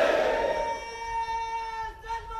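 A crowd chanting a slogan in unison, ending in one long call held on a steady pitch that fades.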